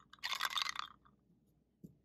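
Short crackly rustle as a clear plastic vial holding a basalt rock in vinegar is handled and tilted, the rock shifting against the plastic, followed near the end by one faint tap as the vial is set down.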